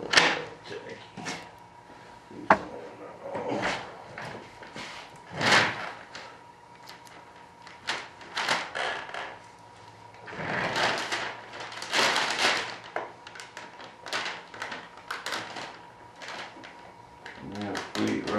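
Clear plastic vacuum-bagging film crinkling and rustling in irregular bursts as it is handled and pleated over a wing mold, loudest in a run of crackling about ten to thirteen seconds in, with one sharp click about two and a half seconds in.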